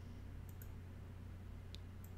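Faint steady low hum with a few brief soft clicks, two close together about half a second in and one more near the end.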